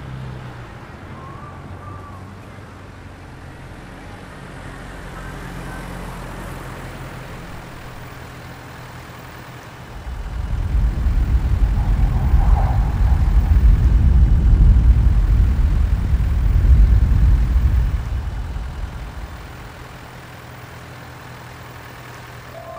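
Low rumble of a car's engine and road noise: a quiet steady low hum at first, then about ten seconds in it swells to a loud rumble for some eight seconds before fading back down.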